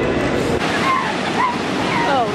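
Ocean surf breaking, a steady rushing wash of waves, with short high-pitched calls over it from about a second in.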